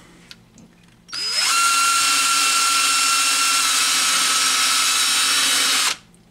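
Cordless drill spinning up about a second in and running a P500 sanding pad from a 3M headlight restoration kit against a plastic turntable dust cover: a steady whine with a rasping hiss, dipping slightly in pitch partway through, then cutting off suddenly near the end.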